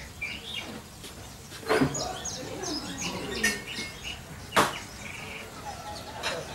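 Small birds chirping repeatedly, with two sharp clacks about three seconds apart.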